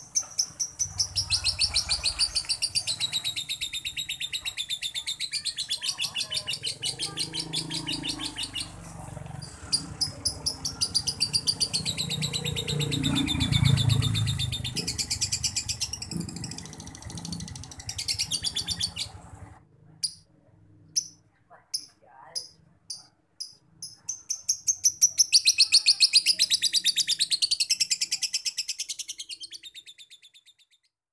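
Male lovebird singing a long, rapid chattering trill that runs unbroken for about twenty seconds, breaks into a few separate chirps, then resumes near the end. This is the drawn-out 'konslet' song that keepers prize as a sign of a male in strong breeding condition.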